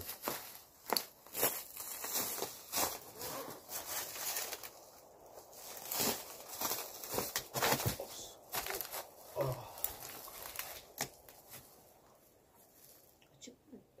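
Footsteps crunching and rustling through dry pine-needle litter and twigs on a slope, an irregular run of crackles that thins out about three seconds before the end.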